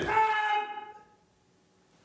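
A karate kiai: one loud, drawn-out shouted cry with a steady pitch that trails off about a second in.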